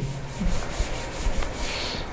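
Board duster rubbing across a chalkboard, wiping chalk off in a continuous scrubbing sound.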